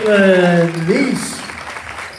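A loud, drawn-out shout, held for most of a second and rising in pitch at the end, with crowd cheering and clapping behind it.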